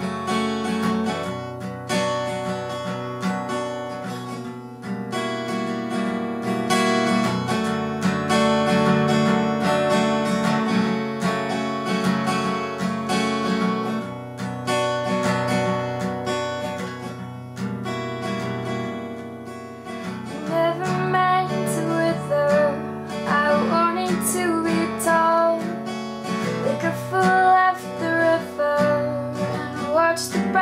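Takamine acoustic guitar strummed in a steady chord pattern. About two-thirds of the way in, a woman's voice starts singing softly over it.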